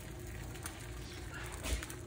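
Beaten egg sizzling faintly on the hot ridged plate of an electric contact grill, with a couple of small knocks.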